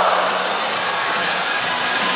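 Stadium crowd noise: a steady, dense din of many voices, with the public-address music faintly beneath.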